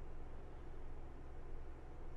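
Caravan air conditioner running: a faint, steady low hum with a light hiss over it.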